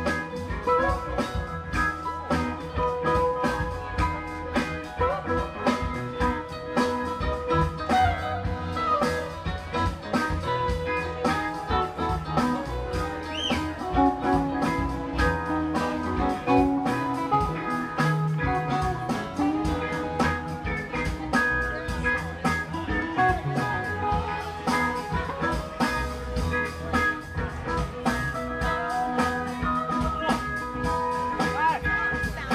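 Live rock band playing an instrumental jam: electric guitar lead over rhythm guitar, keyboard and a steady drum-kit beat, heard through stage speakers.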